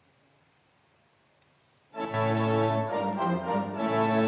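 Near silence for about two seconds, then a church pipe organ comes in suddenly and plays sustained chords.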